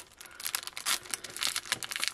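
Clear plastic cellophane sleeve crinkling and crackling in irregular quick bursts as it is handled and its sealed flap is peeled open.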